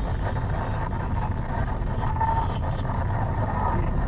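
Steady low engine and road rumble heard inside a Mercedes-Benz car's cabin as it drives along.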